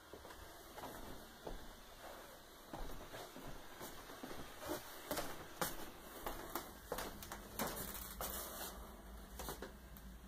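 Irregular clicks, taps and rustles, several a second, over a faint low hum: handling and movement noise from a handheld recording in a small room.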